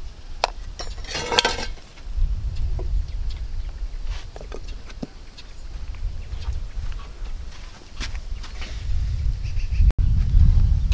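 Spoon clinking against a glass blender jar, with a short clattering burst about a second in as the lid goes on, followed by a few scattered light clicks over a low steady rumble.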